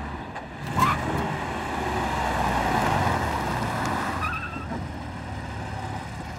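A Porsche 911 convertible drives past: its flat-six engine runs under tyre noise that swells and fades as it passes. There is a short tyre squeal about a second in and another near the four-second mark.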